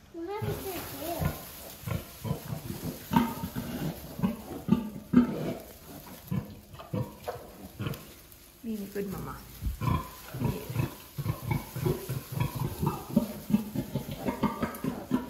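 A sow and her newborn piglets grunting and squealing in short, irregular bursts, with a voice mixed in.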